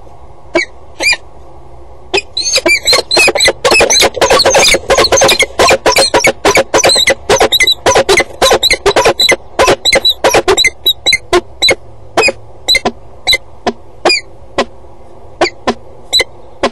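Peregrine falcons calling in the nest box: a couple of single harsh calls, then a long rapid run of them, about three or four a second, that slows and spaces out near the end. The calling comes as the male joins the female in the box, typical of a pair greeting at the nest.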